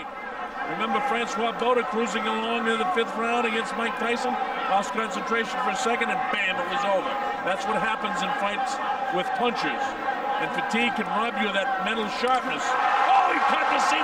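Men's voices talking continuously in the background, from the English-language commentary of the fight broadcast, over a murmuring arena crowd.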